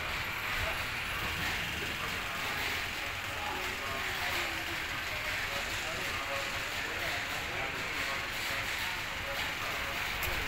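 Steady outdoor background noise with faint, indistinct voices.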